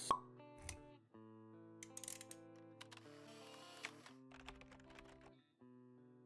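Faint intro music of sustained steady tones with animation sound effects: a sharp pop just at the start, then scattered clicks and a brief swish about two to three seconds in.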